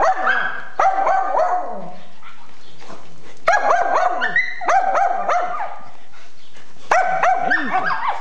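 Small Shih Tzu dog barking and yipping in three bursts of rapid high-pitched calls, with short pauses between them.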